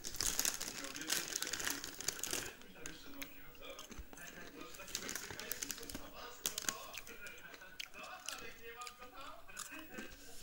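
Paper crinkling and rustling, densest in the first couple of seconds, as wrapping paper is handled, heard through a TV speaker; voices are mixed in.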